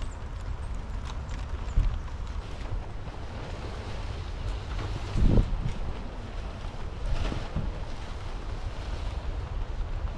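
Wind buffeting the microphone in a steady low rumble over an even outdoor hiss, while a wet tent rain fly is pulled off and handled, with scattered small knocks and rustles. The loudest thump comes a little past halfway.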